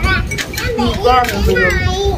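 Speech: high-pitched children's voices chattering, with a woman saying a single word.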